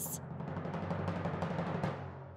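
Timpani drum roll, a suspense sound effect that holds off an answer reveal, swelling slightly and then stopping.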